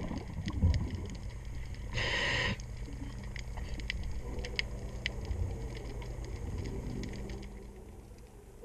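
Underwater, a diver's breathing regulator hissing in a half-second inhale about two seconds in, over a low steady hum and scattered faint clicks.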